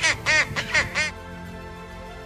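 Skua giving a rapid series of harsh calls, about five a second, each rising and falling in pitch, as it defends its young against an intruder. The calls stop about a second in, leaving steady background music.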